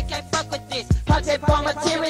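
Hip hop song with a heavy, repeating kick-drum beat and bass, and a voice rapping over it.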